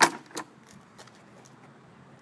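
A sharp metal clack as the seat and rear fender of a 1971 Honda CB500 cafe racer are lifted, followed by a lighter click about half a second later. After that there is only faint background.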